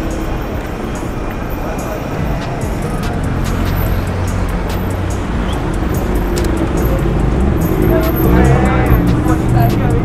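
Busy street at night: traffic and vehicle engines running, with people talking and music playing, growing louder toward the end.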